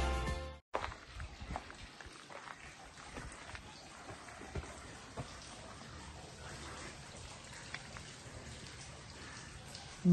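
Background music fading and cutting off in the first second, then faint outdoor ambience with scattered soft ticks and clicks.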